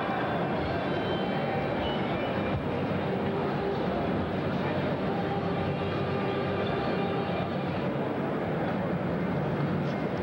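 Steady hubbub of many indistinct voices in a large exhibition hall, with no single sound standing out.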